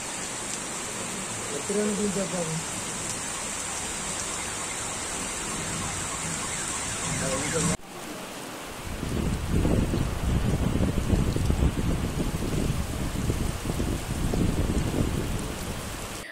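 Steady rain falling on a wet road. After a cut about eight seconds in, rain over an open field with a louder, uneven low rumble.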